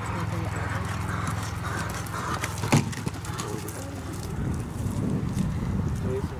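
Hoofbeats of a horse cantering on an arena's sand footing, with a single sharp knock a little under three seconds in.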